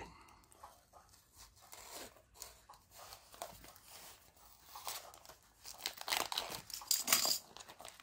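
Snap-off craft knife slitting open a parcel's wrapping with soft scratching, then the paper and plastic wrapping crinkling and tearing as it is pulled open, louder about six seconds in.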